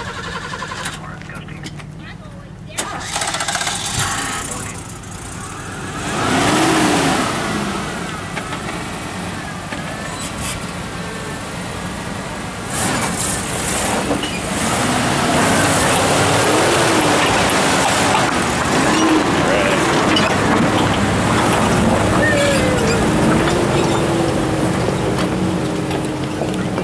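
Isuzu pickup's V6 engine working at low speed under load as the truck crawls over rock, its revs rising and falling again and again. It grows louder about halfway through and stays loud as the truck passes close by.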